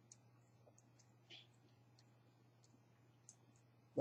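Near silence with a faint steady hum and scattered faint clicks of chopsticks against plastic sushi trays during eating, with one slightly louder soft scrape about a second in.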